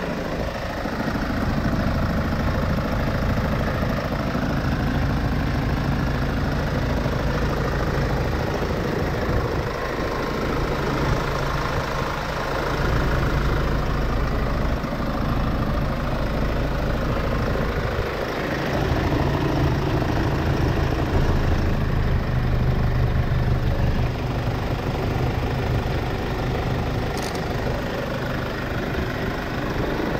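Kia Sorento 2.5 CRDi four-cylinder common-rail diesel engine idling steadily.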